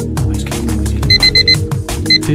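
Fast electronic background music with a steady quick beat, and about a second in, four short rapid electronic beeps from the workout interval timer, signalling the end of the 45-second exercise interval.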